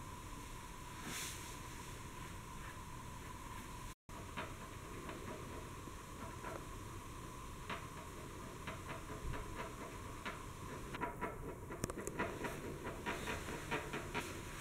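Quiet steady hiss with a faint, thin whine, and from about halfway on a run of light clicks and taps as black iron gas pipe and fittings are handled.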